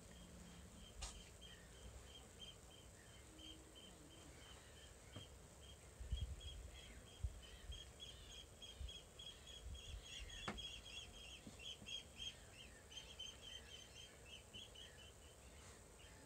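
Faint, quick chirps at one high pitch, about three or four a second, typical of a small bird calling, over a near-silent background. Soft low rumbles come about six and ten seconds in.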